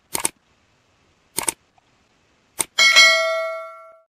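Sound effects of a like-and-subscribe animation: a double mouse click, another double click, a single click, then a bell ding that rings out and fades over about a second.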